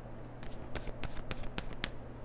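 A tarot deck being shuffled by hand: a quick, irregular run of light card clicks and snaps.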